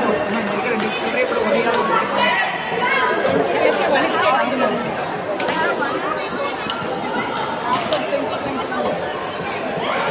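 Indistinct chatter of many voices at once, echoing in a large sports hall, with a few short sharp taps among it.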